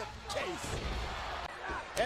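Wrestling broadcast audio at low level: faint commentary over a low rumble, then a sharp impact right at the end as a wrestler is hit in the ring.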